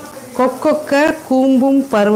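Food frying in a kadai on a gas stove, a steady sizzle under a woman's voice.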